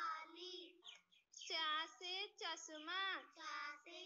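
A child's voice singing a Hindi alphabet chant, letter followed by word, in short gliding sung phrases with a brief pause about a second in.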